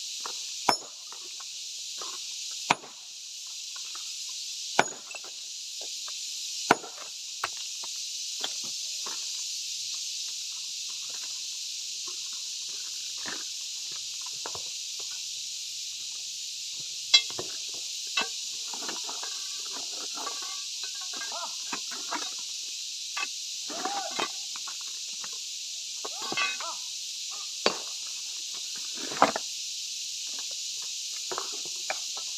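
A long-handled hammer striking a large boulder of dark gemstone rock, four sharp cracks about two seconds apart, as the rock is split by hand. Later come scattered lighter knocks and clinks of loose stone, over a steady high hiss.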